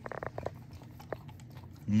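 Beagle licking and chewing peanut butter off a metal mixing hook: a quick run of mouth smacks in the first half-second, then a few faint clicks.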